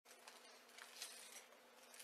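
Near silence: faint room tone with a steady low hum and a few soft rustles.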